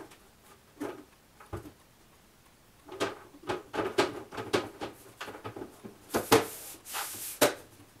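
A laser cutter's long cover panel being set onto the machine's body and pressed into place: a few faint knocks, then a run of sharp clicks and knocks with two scraping swishes near the end.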